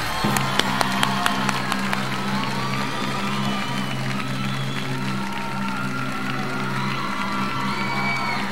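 Studio audience applauding and cheering, with scattered whistles and whoops, right after a song ends. A steady low drone holds underneath.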